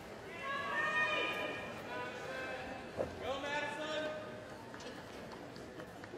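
A faint voice speaking, echoing as if over an arena's public-address system, in two phrases, with a sharp click about three seconds in.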